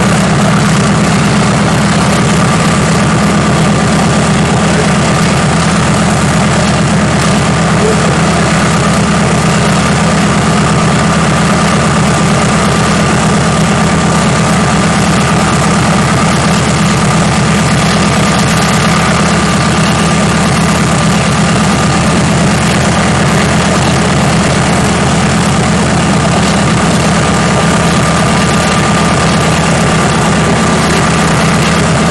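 CAC Boomerang fighter's Pratt & Whitney Twin Wasp radial engine idling steadily after start-up, a deep even running note with a thin high whine over it.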